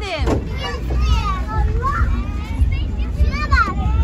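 Children's voices at play: overlapping calls, chatter and shouts, with a high falling squeal right at the start, over a steady low rumble.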